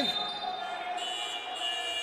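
A steady high-pitched tone with a fainter lower tone beneath it, growing stronger about a second in and holding steady.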